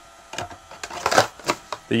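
A string of short clicks and light knocks from the plastic body of an Oregon CS300 battery chainsaw being handled and shifted in the hands. The chainsaw is not running.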